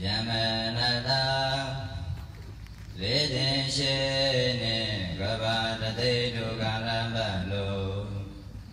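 Theravada Buddhist chanting in Pali by robed monastics, recited on a low, nearly steady pitch. It comes in two phrases, with a short break about two seconds in.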